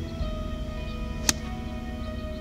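Background music with steady sustained tones; about a second and a half in, a single sharp click of a pitching wedge striking a golf ball.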